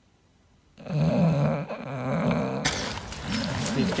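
English bulldog snoring in a few low, rumbling breaths. Near the end it gives way suddenly to outdoor noise of wind and rustling.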